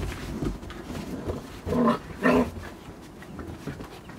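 Puppies play-wrestling, giving two short barks about two seconds in, amid faint scuffling.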